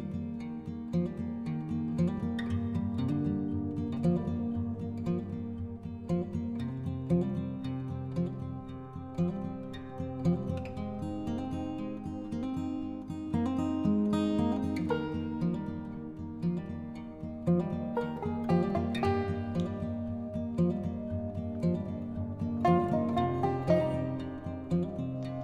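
Background music: a tune of plucked acoustic guitar notes.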